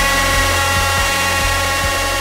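Music: a sustained chord of many steady tones over a low bass drone, with a few soft low thumps.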